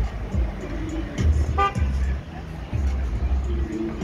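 A car horn gives one short toot about a second and a half in, over street traffic. Music with heavy bass notes and voices carry on underneath.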